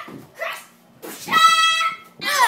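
A child's high-pitched squeal, held on one steady note for about half a second, starting a little over a second in, after a couple of short soft vocal sounds.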